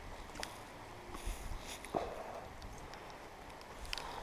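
Faint, steady outdoor noise of rain and wind on a wet moor, with a few light ticks and one sharper click about two seconds in.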